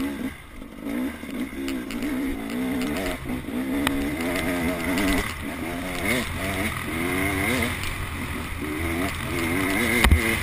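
Enduro dirt bike engine under way, its pitch rising and falling over and over as the throttle is opened and closed, with a brief let-off about half a second in.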